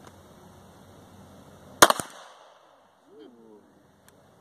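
Single shot from a Defenzia M09 less-lethal pistol firing a rubber impact round, a sharp crack a little under two seconds in, followed by a fainter second crack and a short echo. A brief voice sound follows about a second later.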